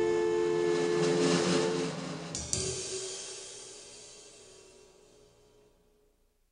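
The final chord of a band's song, held with cymbals shimmering, breaks off about two seconds in. A last sharp cymbal-like hit follows and rings out, fading steadily away to silence.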